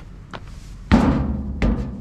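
Footsteps on hollow steel checker-plate stairs: two heavy steps, about 0.9 s and 1.65 s in, each with a low metallic ring from the staircase.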